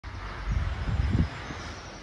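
Wind buffeting the microphone outdoors: a low, uneven rumble that surges in gusts from about half a second in to just past a second, over a faint background hiss.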